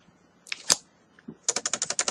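Typing on a computer keyboard: two single keystrokes about halfway through, then a quick run of keystrokes near the end.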